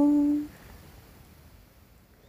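A woman's voice holds one steady hummed note, the drawn-out end of a "hallo", for about the first half second, then faint room tone.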